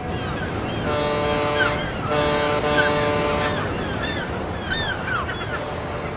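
A ship's horn sounds two long blasts, the second longer, over a steady wash of sea noise, with seabirds calling throughout.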